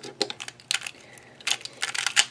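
Plastic pieces of a Congs Design YueYing 3x3 speed cube clicking as the cube is handled and its layers turned: a scatter of short, sharp clicks, with a quieter gap in the middle and more clicks near the end.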